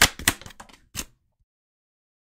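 Tarot cards being handled: a few sharp taps and snaps of card stock as a card is drawn from the deck and set down on the table, all within about the first second.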